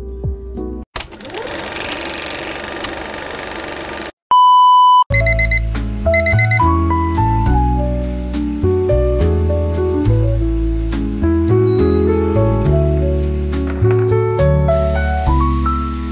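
Music cuts out about a second in, followed by a few seconds of hiss-like noise. Then comes a single loud electronic beep, an alarm-clock tone lasting under a second. After it, music with a bass line and bright melody notes plays for the rest.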